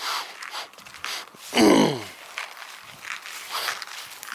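Footsteps of a person walking on grass and asphalt, with a loud short vocal sound falling in pitch, like a sigh, about one and a half seconds in.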